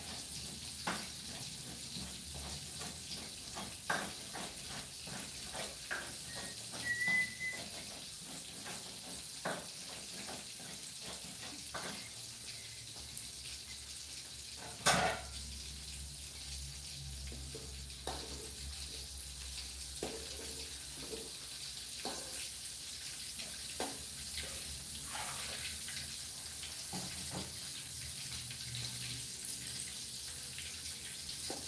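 Tempeh frying in oil in an aluminium wok: a steady sizzle with scattered crackles and pops, one louder pop about halfway through. Near the end a metal spatula scrapes the wok as the pieces are turned.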